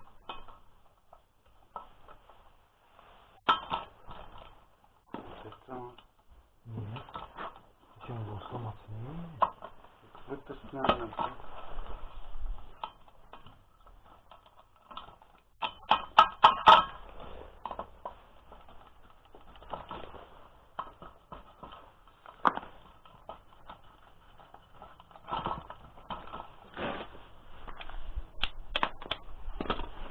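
Metal clinking and tapping as combine-harvester knife segments are fitted onto the steel discs of a rotary mower: scattered clinks and knocks, with a quick run of louder taps about sixteen seconds in.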